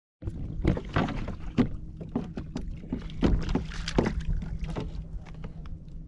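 A run of irregular splashes and knocks at the side of a fishing kayak as a trout is landed, loudest in the first four seconds and thinning out near the end. A steady low hum and wind on the microphone run underneath.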